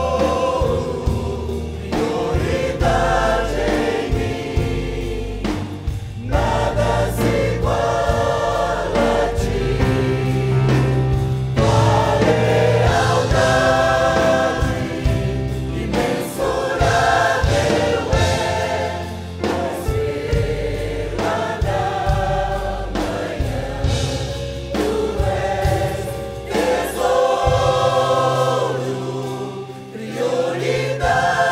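Mixed church choir singing a Portuguese-language worship song, phrase after phrase.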